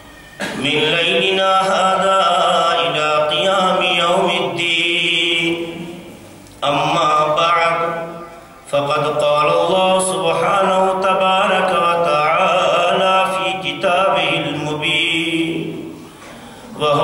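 A man's voice chanting an Arabic recitation into a microphone in a slow, melodic style, holding long notes in four phrases with short breaths between them. It is the sung opening sermon that precedes the lecture.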